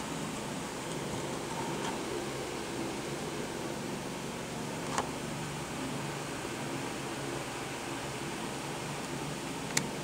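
Steady background hiss, like a fan or air conditioner running, with two brief sharp clicks, one about halfway through and one near the end, from fingers handling the toy car's clear plastic blister pack.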